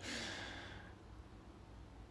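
A faint breath out through the nose, fading away over about a second, then near-silent room tone.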